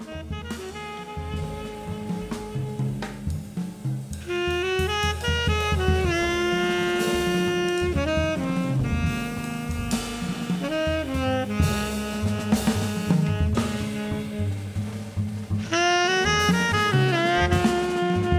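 Live jazz trio: a tenor saxophone plays held notes and stepping phrases over upright bass and drums. The saxophone comes in, louder, about four seconds in, after a quieter start of bass and drums.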